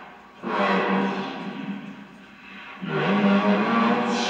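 Background music with guitar. It comes in suddenly about half a second in, dies down, then swells back up near the end.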